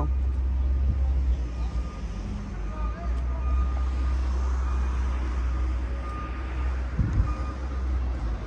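Steady low rumble of vehicle engines and road traffic around a construction site, with a faint high beep now and then.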